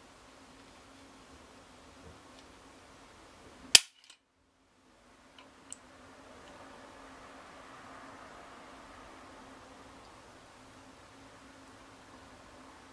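A single sharp metallic snap about four seconds in: the hammer of an unloaded Ruger 22/45 Lite pistol falling as a trigger pull gauge draws the factory trigger through its break, at about four and a half pounds. A few faint small clicks follow.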